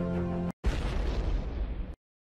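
Sustained, tense results-reveal music breaks off about half a second in, and a sudden loud boom sound effect hits, its rushing noise tail running until it cuts off abruptly near the end. The boom is the sting that marks the next qualifier being revealed.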